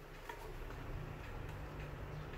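Faint ticking and a low steady hum from a wind-up horn gramophone's clockwork turntable mechanism, the hum growing a little stronger about half a second in as the turntable gets going.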